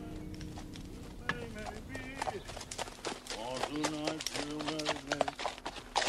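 Horse's hooves clip-clopping at a walk on a dirt track, starting about two seconds in. A voice sounds several drawn-out notes over them.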